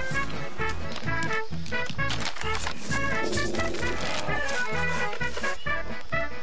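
Bouncy background music with a steady, pulsing bass line.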